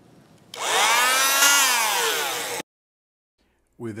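Handheld electric bone saw cutting through the mandible's coronoid process: a loud whining buzz starts about half a second in, rises and then falls in pitch, and cuts off suddenly after about two seconds.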